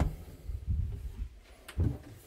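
Quiet handling noise with a few soft, low thumps and a brief sharp knock near the end, from moving about at the open wardrobe.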